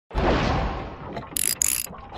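Logo-intro sound effects: a sudden hit that fades out over about a second, followed by two short, bright bursts near the end.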